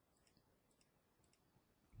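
Near silence, with a few faint clicks of a computer mouse button.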